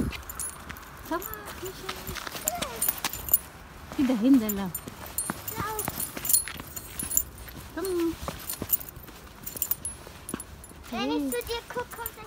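A child's short excited calls and squeals that rise and fall in pitch, every second or two, over footsteps on snow-covered paving.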